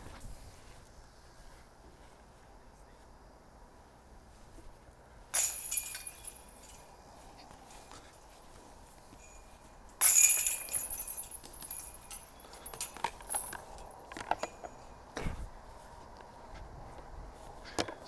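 Disc golf basket chains rattling as discs hit them: a jingle about five seconds in, then a louder crash of chains about ten seconds in that rings on for a second or so, followed by a few light clicks.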